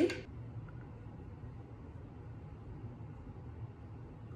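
Quiet room tone: a faint steady low hum with no distinct sound events.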